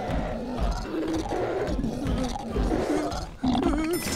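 A cartoon monster growling and grunting in low, wavering tones over a run of deep, heavy thuds like big footsteps.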